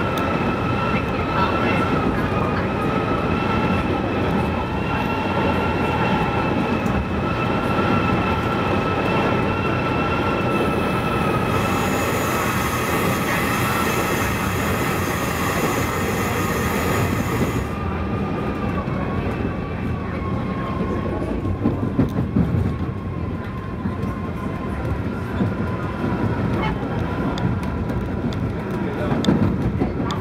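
Metra commuter train running at speed, heard from inside the cab car: a steady rumble of wheels on rail with a high whine running through it, and a stretch of hiss for several seconds in the middle. In the last part the whine fades and louder clatters come as the train crosses switches at a junction.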